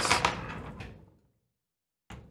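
A few light clicks and knocks from handling a metal gantry plate and hex key, fading out within the first second, then silence.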